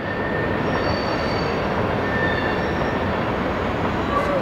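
Railway train rolling, a steady rumble with thin, high wheel squeals held for a second or so at a time.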